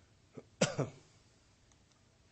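A man clearing his throat once: a small catch just before half a second in, then a louder rasping clear lasting about a third of a second.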